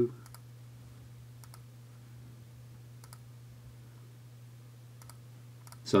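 A few faint, separate computer mouse clicks, spaced a second or more apart, over a steady low hum.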